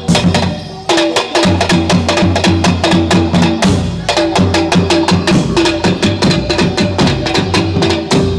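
Javanese soreng ensemble music: a fast, driving run of drum strokes over repeated ringing kettle-gong tones.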